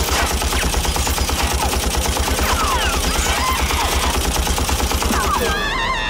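Submachine gun firing one long, rapid, continuous burst of automatic fire, which stops about five and a half seconds in.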